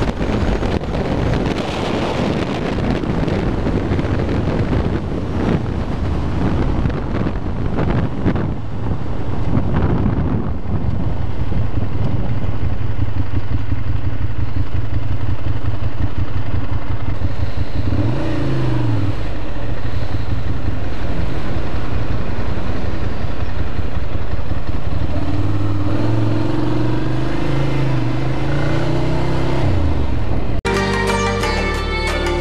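Ducati Monster 696 air-cooled L-twin motorcycle engine under wind rush that fades as the bike slows. From about a third of the way in, the engine runs steady at low revs while rolling slowly. It revs up and down briefly past the middle, then rises in pitch as it accelerates away near the end.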